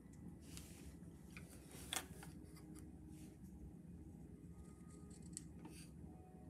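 Faint scratching and light ticks of a paint-pen tip working on a painted stone, with one sharper tick about two seconds in, over a low room hum.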